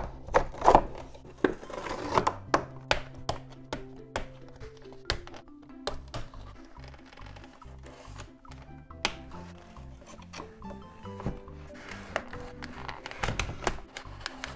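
Background music with a slow, stepping low bass line, over hands handling a doll's plastic and cardboard box packaging: repeated sharp clicks, knocks and crinkles, busiest in the first two seconds and again near the end.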